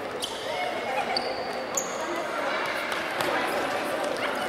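Indoor futsal play in a reverberant sports hall: the ball being kicked and bouncing on the wooden floor, with children's shouts and a couple of short, high shoe squeaks.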